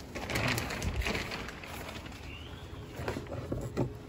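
Plastic sheeting rustling as it is pushed aside, with things on a workbench being handled: a few light knocks and clicks. The rustling is busiest in the first second or so.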